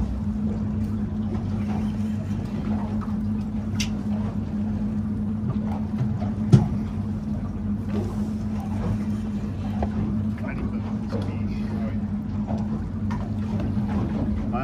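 Boat motor idling with a steady low hum while a fish is reeled in, and one sharp knock about six and a half seconds in.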